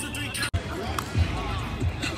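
Several voices talking and calling over one another, with a few dull low thumps about a second in and near the end.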